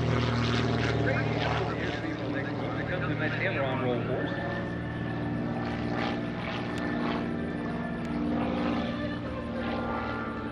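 Super Chipmunk's piston engine and propeller droning overhead during an aerobatic routine, the pitch sliding up and down as the plane manoeuvres.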